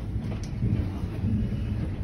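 Steady low rumble of a moving electric commuter train heard from inside the carriage: wheels on rails and running gear, with one short click about half a second in.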